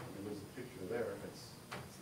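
Quiet, low speech from someone in the meeting room, with a single sharp click or knock about a second and a half in.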